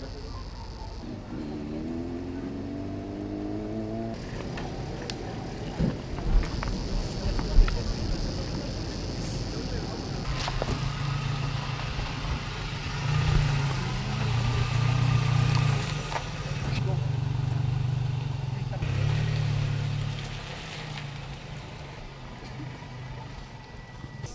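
A pickup truck's engine running as the truck drives slowly past close by, a low steady hum lasting about ten seconds before it fades. Earlier, an engine note rises over a few seconds, and a few sharp knocks come in between.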